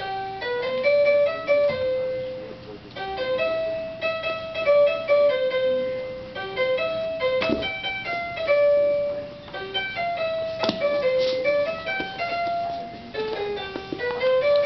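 A baby's electronic musical toy playing a simple piano-like tune, one note at a time, with two sharp knocks partway through.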